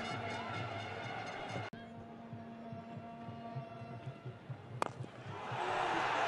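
Cricket stadium crowd noise over a steady droning hum, with a brief dropout just under two seconds in. The crowd swells louder about five seconds in.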